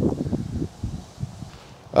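Irregular rustling and handling noise for about the first second, fading to a faint hiss.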